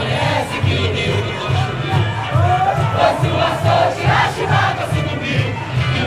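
A large crowd singing a samba-enredo together over a samba percussion section (bateria), its bass drums beating a steady, regular pulse.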